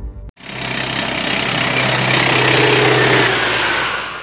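A loud rushing sound effect with a low engine-like hum beneath it, swelling over about three seconds and fading near the end, like a heavy vehicle passing.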